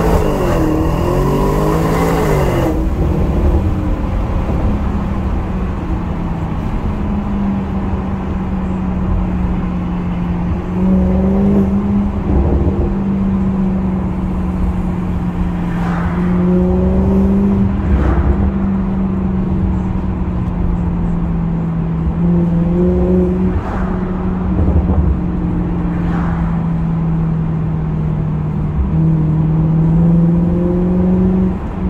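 Audi S6 engine heard from inside the cabin while driving at steady cruising revs, a low even drone that shifts slightly in pitch a few times. Its revs rise briefly in the first couple of seconds.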